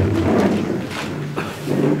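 Audience in a hall clapping: a dense, irregular patter of many hands, slightly fading toward the middle and rising again near the end.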